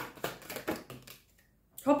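A deck of tarot cards being shuffled by hand: a few quick, crisp card snaps in the first second, then a short pause. A woman's voice begins right at the end.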